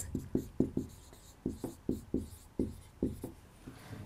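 Marker pen writing on a whiteboard: a quick series of short, separate strokes, a few per second, with brief pauses between letters.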